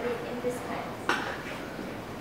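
A woman speaking briefly, then one sharp click about a second in, with a short ring.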